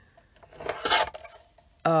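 Paper trimmer blade sliding along its rail and slicing through cardstock in one short stroke, about half a second to a second in.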